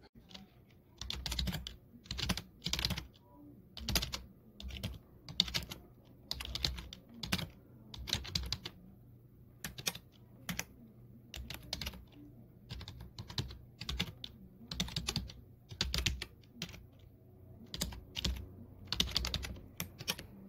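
Computer keyboard typing sound effect: irregular runs of key clicks with short pauses between them.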